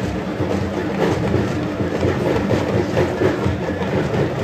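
Loud, steady, dense noise of a large outdoor crowd milling and talking together, with no single voice standing out.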